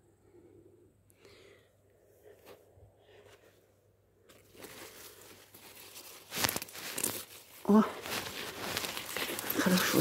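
Radish leaves rustling and crackling as a large radish is grasped among its tops and pulled out of the soil by hand, starting about four seconds in.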